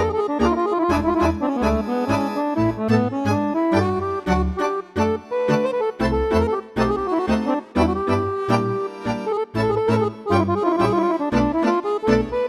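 Weltmeister piano accordion played solo: quick runs of melody on the treble keys over a regular pulse of bass notes and chords.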